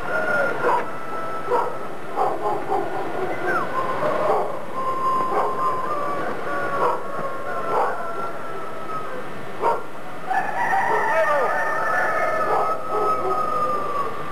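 Several dogs howling together, long wavering howls overlapping at different pitches with short falling yips among them; the howling swells again about ten seconds in.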